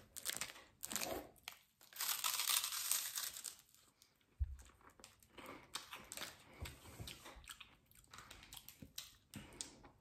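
A crunchy snack stick being chewed close to the microphone, in irregular crunches, with crinkling of a plastic sweet wrapper being opened.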